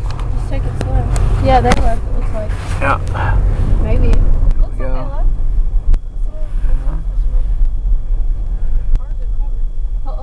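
Steady low rumble of a car's engine and tyres heard from inside the cabin while driving on a snow-covered road.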